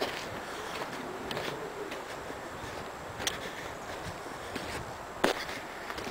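Footsteps of a person walking over dry sandy ground and pine litter, with a few sharp clicks, the loudest near the end.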